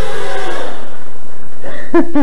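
Four small brushless motors with three-blade props on a scratch-built quadcopter carrying a foam flying-saucer shell, whining under the strain of lifting the shell as it comes down to land, then cutting out under a second in. A short laugh follows near the end.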